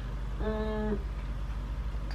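A woman's short hum or held hesitation sound, about half a second long and on one steady pitch, a little way in, over a steady low background hum.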